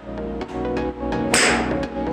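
A three hybrid golf club striking a golf ball off a hitting mat: one sharp crack about a second and a half in, over steady background music.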